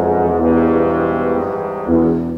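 Tuba and trombones playing sustained low brass notes together. The chord shifts about three-quarters of the way through, and a sudden louder accented attack comes just before the end.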